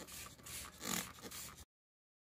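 Hand-held trigger spray bottle squeezed again and again, each squeeze a short hiss of mist onto strawberry leaves, about two a second. The sound cuts off suddenly near the end.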